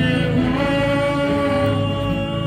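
A group of voices singing together in long, held notes.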